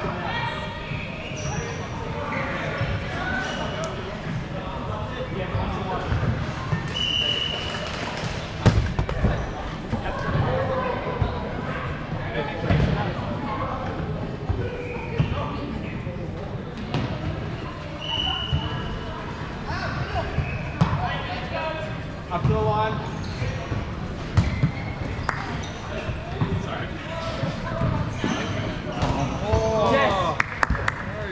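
Dodgeballs being thrown, bouncing and hitting on an indoor court in a large sports hall, a run of irregular thuds and smacks under players' distant shouts and chatter. Two brief high squeaks stand out, about 7 and 18 seconds in.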